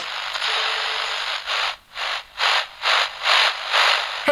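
A rubbing, scraping noise: a continuous hiss for about a second and a half, then about six rhythmic strokes, a little over two a second.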